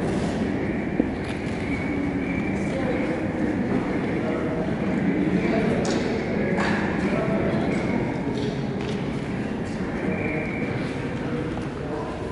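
Indistinct chatter of a group of boys, echoing in a large indoor hall, with scattered light knocks and clicks.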